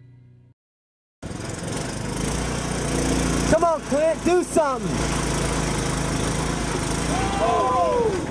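A small engine running steadily, starting abruptly about a second in, with spectators yelling and whooping in a short burst about halfway through and again near the end.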